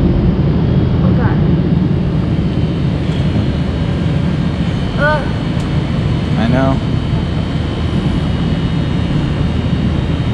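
Loud, steady low rumble with a faint high whine running throughout, with two short vocal sounds about halfway through.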